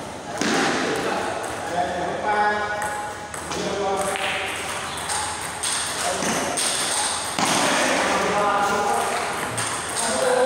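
Table tennis rally: the ball clicking off paddles and table in quick alternation, with voices talking in the background.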